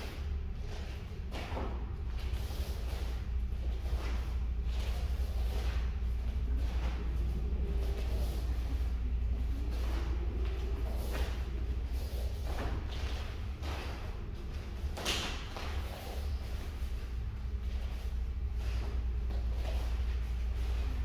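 Bare feet stepping and stamping on foam mats and uniforms snapping as three people perform a taekwondo form together: scattered soft thuds and sharper snaps at irregular intervals, the sharpest about three-quarters of the way through, over a steady low room hum.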